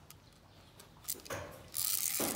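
A mechanical float switch's cord, with its plastic stopper beads, rattling and scraping through the switch body as the float is lowered by hand: two short rasps about a second in, then a louder, longer one near the end.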